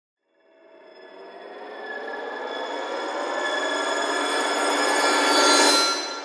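A cinematic riser: a dense cluster of sustained ringing tones that swells steadily louder and rises slightly in pitch for about five seconds, then breaks off sharply just before the end.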